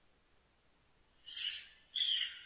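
A faint click, then two short breathy blows of air through pursed lips, about half a second apart.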